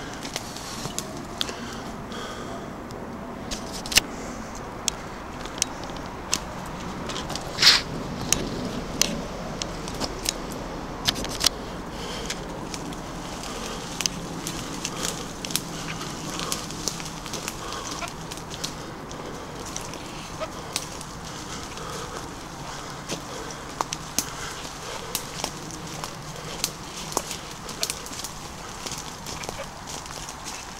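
Footsteps crunching through dry leaf litter and twigs, with irregular crackles and snaps of undergrowth and branches brushing past. A louder snap comes about eight seconds in.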